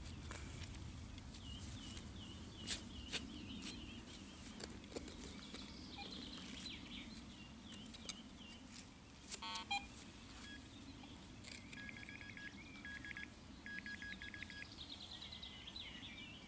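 Faint digging into turf with a small hand tool, scattered light knocks, while a metal detector gives electronic beeps: one short tone about halfway through, then runs of rapid beeping near the end. Birds chirp in the background.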